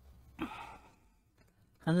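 A woman sighs once, a short breathy exhale about half a second in.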